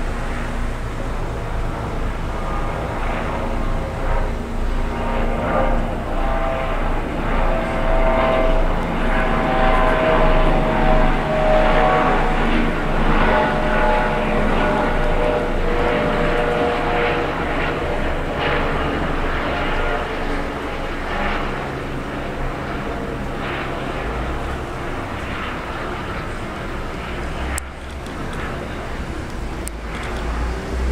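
Two helicopters, a Sécurité Civile Eurocopter EC145 and a Gendarmerie Nationale EC135, flying past with a steady rotor and turbine drone. Tones in the engine noise slowly fall in pitch through the middle as they pass, with people talking in the background.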